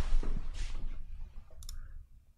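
A few light clicks and soft handling noise, with one sharp click near the end.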